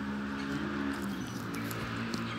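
A woman's voice holding a steady hum for a little over a second, with rubbing and rustling from a gloved hand handling the phone close to its microphone.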